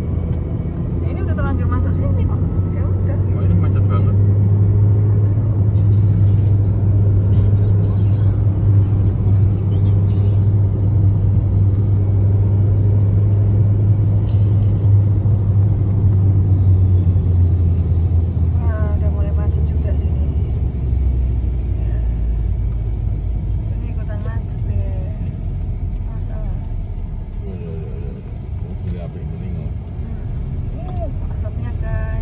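Car interior noise at highway speed: a steady low rumble of tyres and engine heard from inside the cabin, easing and sitting lower after about two-thirds of the way through, with a few brief voices over it.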